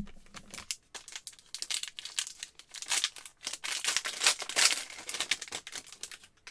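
A 2022 Score Football trading-card pack's wrapper crinkling and tearing as it is ripped open by hand. The dense crackle is loudest about four seconds in.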